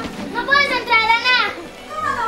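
A girl's high-pitched wordless vocal cry, held for about a second with its pitch wavering up and down.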